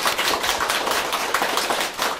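Studio audience applauding: many people clapping together, dense and steady.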